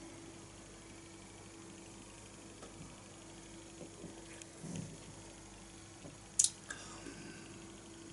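A man quietly sips and swallows beer from a glass, faint over a steady low hum in a small room. A short, sharp noise comes about six and a half seconds in.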